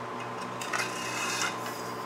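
Aluminum tent pole handled at a workbench, with a soft scraping rub of the pole being slid and shifted in the hands, about a second long near the middle. A steady low hum runs underneath.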